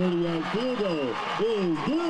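A man's voice talking, words not made out.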